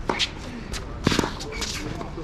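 Tennis rally on a hard court: sharp hits of the ball, once near the start and a quick double hit about a second in, with a player's footsteps scuffing on the court as he runs out wide.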